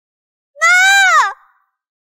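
A woman's single high-pitched, anguished wordless cry, under a second long, its pitch holding and then dropping sharply as it breaks off.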